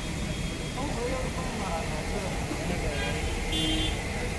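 Street ambience: a steady low rumble of traffic with indistinct voices of people talking, and a brief high tone about three and a half seconds in.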